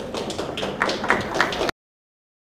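A rapid, irregular flurry of camera shutters clicking over a room's background hubbub, growing louder, then cutting off suddenly about a second and a half in.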